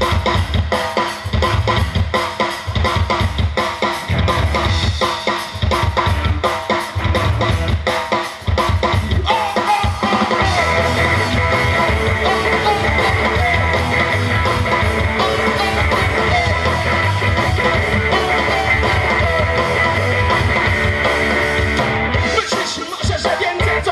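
Rock band playing live: drum kit and electric guitars. About ten seconds in, after a brief drop, the guitars fill in to a denser, more sustained sound over the drums.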